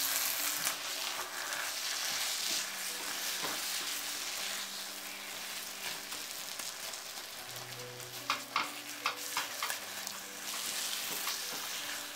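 Thick vegetable and mashed-potato mixture sizzling in a nonstick wok while a flat spatula stirs and mashes it, with a few sharp scrapes and taps of the spatula against the pan about two-thirds of the way through.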